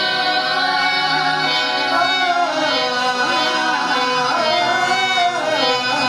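Live qawwali: harmoniums playing a sustained melody while men sing, their voices gliding up and down over the reeds.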